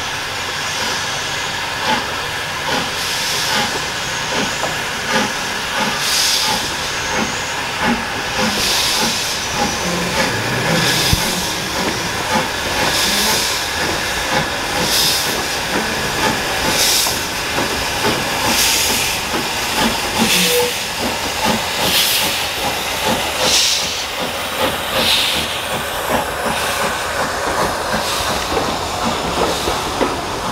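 Steam locomotive, an SDJR 7F 2-8-0, moving its train slowly past with steam hissing in regular surges about every two seconds, and the coaches rolling by.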